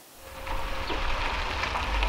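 An Ox electric truck rolling slowly on a dirt lane: a steady low rumble and hiss of tyres on dirt, with no engine note. It fades in over the first half second.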